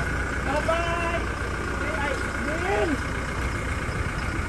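A car engine idling steadily, its low hum running under faint voices.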